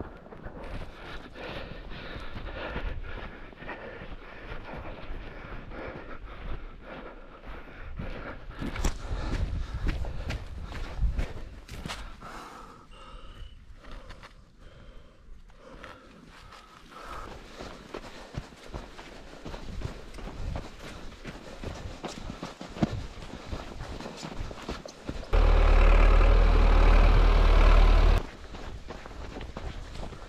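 Footsteps of a runner in snow, with clothing and camera handling noise as the runner goes along. Near the end, a loud low rumble lasting about three seconds cuts in and out abruptly.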